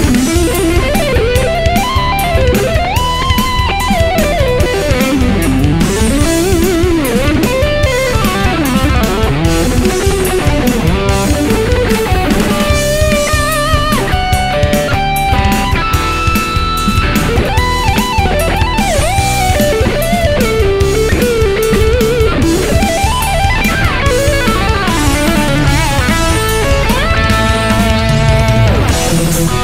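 Distorted electric guitar playing lead lines, with bends and vibrato, over a steady heavy-metal backing of drums and bass.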